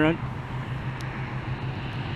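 Steady drone of highway traffic, a low rumble with a faint tick about halfway through.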